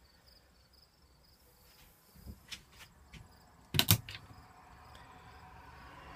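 A small cabinet door being opened: a few soft knocks, then a sharp double click of its catch about four seconds in.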